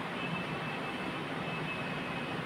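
Steady background noise in a room, an even rushing hum with a faint high whine over it, heard in a pause between speech.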